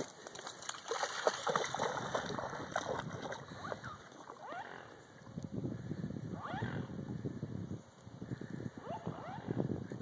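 A large black dog wading out through shallow lake water, its legs splashing continuously. A few short animal calls rise and fall about two-thirds of the way through.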